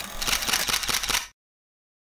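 Camera shutter sound effect: a rapid run of clicks, like a motor-driven camera firing a burst, lasting a little over a second and cutting off suddenly.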